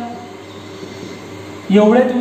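A man's lecture speech that breaks off for about a second and a half, leaving only a steady low hiss and hum of room noise, then resumes near the end.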